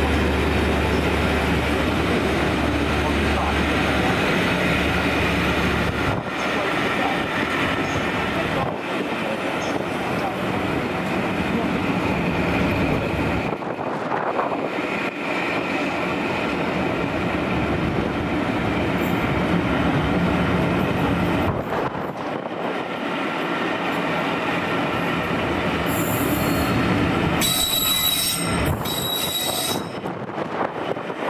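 Locomotive-hauled passenger coaches running past close by at speed: a steady loud rush of wheels on rail, with a low hum for the first few seconds and thin high squealing tones near the end.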